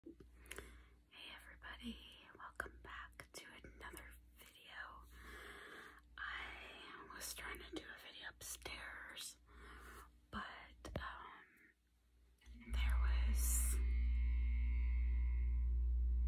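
A woman whispering, with scattered sharp clicks between the phrases. About thirteen seconds in, a steady low hum with a few faint tones above it starts suddenly and is louder than the whispering.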